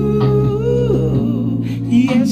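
A man hums a wordless, wavering held note into a handheld microphone over a slow R&B karaoke backing track of sustained bass and chords. The vocal line fades about a second in, leaving the backing track.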